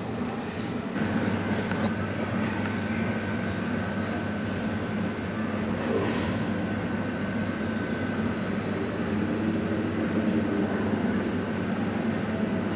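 Steady mechanical rumble with a low hum and a faint high steady tone that comes in about a second in.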